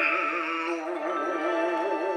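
Male shigin reciter holding a long chanted note, its pitch wavering up and down in a slow vibrato, over a recorded orchestral accompaniment of steady held chords.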